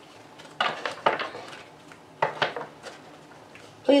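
A deck of Romance Angels oracle cards being shuffled by hand: two short bursts of card-edge flicks and slaps, about half a second in and again a little past two seconds.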